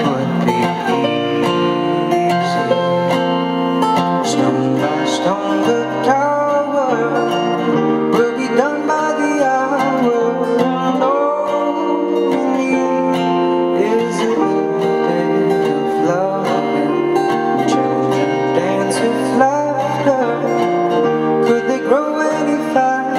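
A song played on acoustic guitar with a voice singing over it, continuous and fairly loud.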